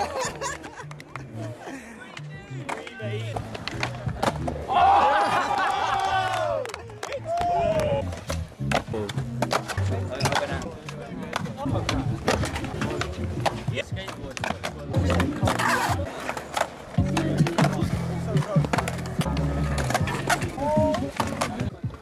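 Skateboards on concrete: sharp pops and clacks of flip tricks and landings, with wheels rolling, over a hip-hop track with a heavy bass line.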